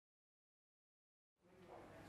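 Silence, then a faint, steady sound fades in a little past halfway through.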